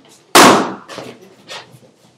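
A balloon bursting once, a single sharp bang about a third of a second in that dies away over about half a second.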